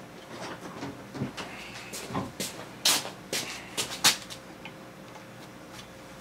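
Sharp metal clicks and short scrapes as the water-pump impeller and its drive key are worked off the driveshaft of an outboard's lower unit, a handful of them between about two and four seconds in.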